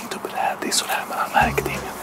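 A man speaking softly, close to a whisper.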